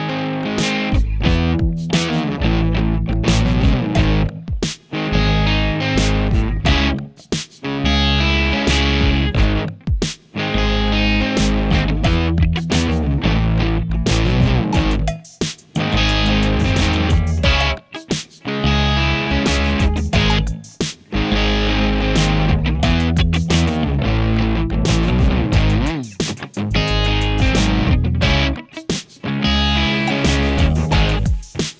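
Background rock music with distorted electric guitar and bass over a steady, regular beat.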